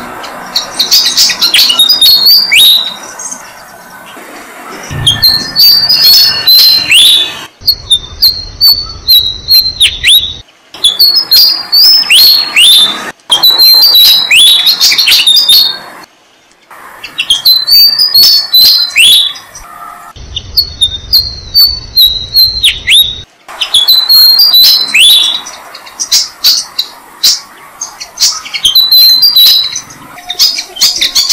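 Malaysian pied fantails at the nest giving loud, high-pitched chirping calls, each note swept sharply downward. The calls come in quick runs of one to three seconds, with short pauses between, and the background noise jumps abruptly between runs.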